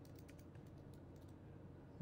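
Faint computer keyboard typing: a quick run of keystrokes in the first second or so as a word is typed into a code editor.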